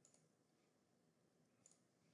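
Near silence with two faint computer mouse clicks, one just after the start and one near the end.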